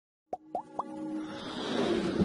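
Animated logo intro sound effect: three quick pops, each rising and pitched higher than the last, then a swelling whoosh that builds up.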